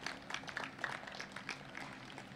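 Faint, scattered clapping from a few people in the audience: irregular single claps that thin out and stop about a second and a half in.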